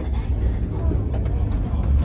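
Passengers talking quietly inside a Hakone Tozan Cable Car funicular car, over a steady low rumble.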